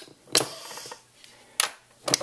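FoodSaver jar sealer attachment having its seal broken on a vacuum-sealed canning jar: a click, then a short hiss of air rushing into the attachment, and another click about a second later as it comes loose.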